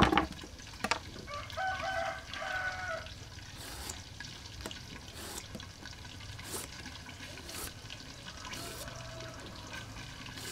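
A knife knocks twice on a wooden board, then a vegetable peeler scrapes strips of skin off a sponge gourd in short strokes about once a second. A rooster crows in the background about a second in, with a fainter crow near the end.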